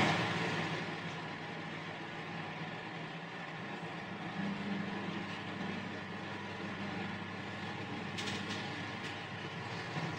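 Several electric cooling fans running in a room: a steady rush of air with faint steady motor hum tones, and a few faint ticks near the end.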